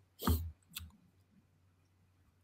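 A short sharp click-like noise a quarter of a second in, a fainter one just before one second, then near silence.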